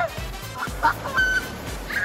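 A laugh, then several short, high-pitched squeals from people splashing and dunking their heads in river water, over background music with a steady beat.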